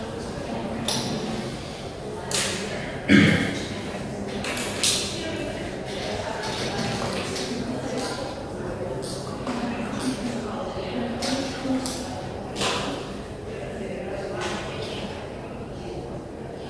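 Laptop keyboard keys being typed, irregular sharp clicks with some pauses between them, the loudest about three seconds in. The clicks echo in a large hall.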